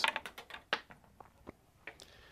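A quick run of light clicks and taps, close together at first, then slowing and thinning out, as a pen is set down and a tennis racket is picked up at a counter.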